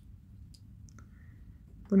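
A couple of faint, light clicks as a miniature plastic bottle is set down on the plastic shelf of a toy fridge.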